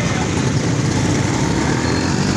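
Vehicle engine running steadily close by, amid street traffic with auto-rickshaws and motorcycles.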